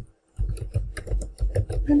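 Typing on a computer keyboard: a quick run of keystrokes starting about half a second in.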